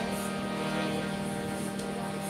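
Harmonium holding a steady sustained chord.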